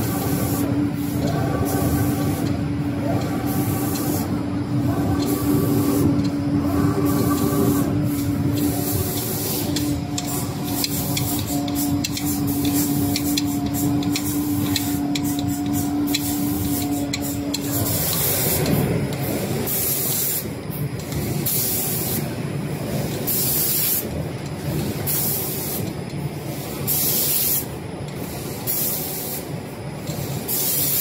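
Automatic spray painting machine at work: the spray guns hiss in short repeated bursts about once a second as they pass over the cabinet panels. A steady machine hum runs under the spraying and stops about 18 seconds in, after which the hissing bursts stand out more clearly.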